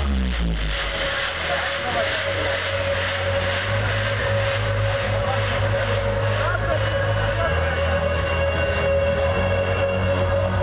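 Loud electronic dance music playing over a club sound system, with long deep bass notes that change pitch and a held higher tone, under the voices of a dancing crowd.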